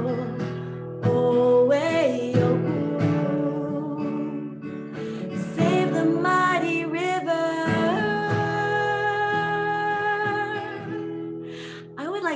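A woman singing a slow chorus to her own strummed acoustic guitar, ending on a long held note that fades out near the end.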